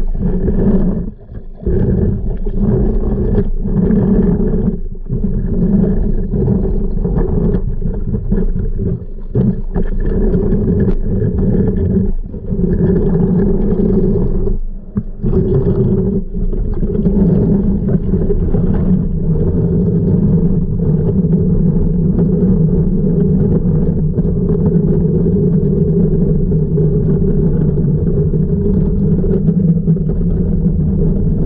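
Steady low hum and rumble of a manual pool vacuum's suction, heard through water by a submerged microphone. It has several brief dips in the first fifteen seconds, then runs evenly.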